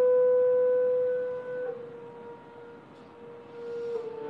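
A solo clarinet holds one long note, which fades after about a second and a half to a soft, thin tone. The strings come back in near the end, playing together.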